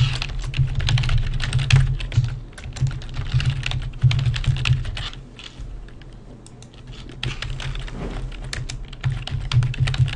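Typing on a computer keyboard: quick runs of key clicks, thinning out for a second or two about halfway, then picking up again.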